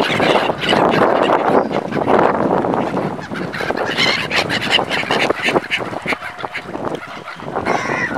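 A flock of black-headed gulls calls harshly over the water as they mob for food, a dense din of overlapping cries. It thins somewhat in the middle and swells again near the end.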